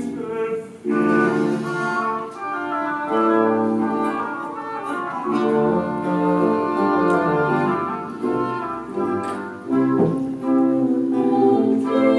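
Chamber orchestra playing classical music live, with a short lull shortly before the end.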